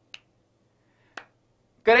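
Two short, sharp clicks about a second apart, made by a person's hands, over a faint steady low hum.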